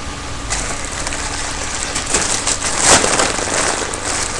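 Helium rushing from the neck of a foil party balloon as it is breathed in, with small crinkles from the foil. The rush swells to its loudest about three seconds in.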